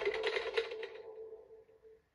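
The tail of a TV news-programme theme tune heard through a television's speaker: a held note with rapid clicks over it, fading out within about a second and a half.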